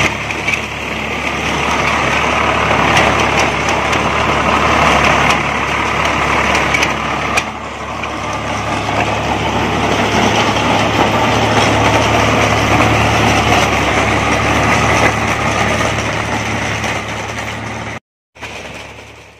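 Swaraj 744 FE tractor's diesel engine running steadily under load, driving a Navbharat trencher whose digging chain cuts through soil, with a few sharp clicks and knocks.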